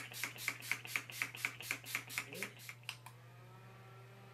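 Urban Decay All Nighter setting spray pumped rapidly, a quick run of short misting sprays, several a second, for about three seconds. Then the faint steady whir of a small handheld fan starting up to dry the spray.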